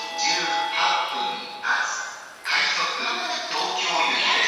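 Station public-address system playing a voice announcement with a melody or chime under it, echoing under the platform roof.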